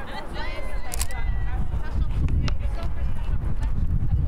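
Faint voices of people talking in the background over a low rumble, with a sharp click about a second in.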